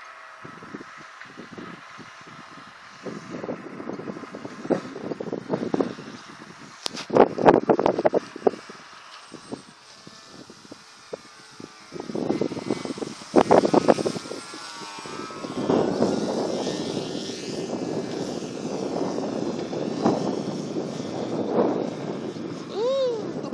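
RC model airplane's motor and propeller buzzing as it flies past, the high whine bending up and down in pitch in the second half as it passes. Gusts of wind buffet the microphone, mostly in the first half.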